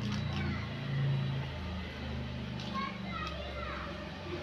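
Background voices, children among them, indistinct, over a low steady hum.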